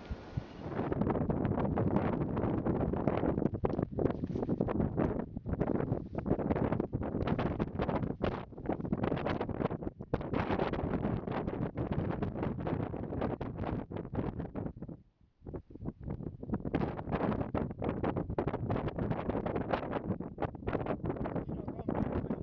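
Wind buffeting a camera's microphone in irregular gusts, loud and low-pitched. It starts about a second in and drops away briefly about fifteen seconds in.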